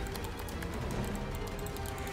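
Quiet background music: a steady ambient track of held tones under a low hum, filling a pause in the talk.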